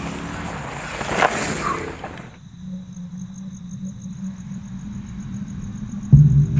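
Mountain bike tyres rolling over a dry dirt trail, with gravel crunching and a few sharp ticks. About two seconds in, this cuts to a quieter steady low hum with a faint high whine.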